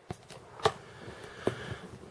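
A dry-erase marker drawing short strokes on a binder's white cover, with a few light clicks and knocks as the hand works and lifts away. There are three short sharp sounds; the middle one is the loudest.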